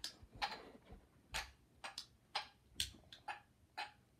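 Faint clicks and light knocks, roughly two a second, from a ceramic dog-shaped lamp and its cord and plug being handled and set down; a couple land as duller knocks.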